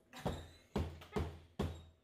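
Four dull knocks in quick succession, about two a second, each with a short low ring after it.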